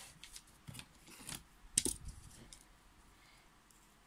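Small metal scissors being handled to cut a strand of crochet yarn: a few light, sharp clicks, the sharpest a little before two seconds in, then quiet.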